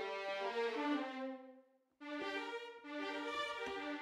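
Sampled violin section (Audio Imperia Areia, 16 violins legato patch in Kontakt) played from a keyboard: sustained notes gliding from one to the next. The phrase fades out about one and a half seconds in, and after a short silence a new legato phrase begins.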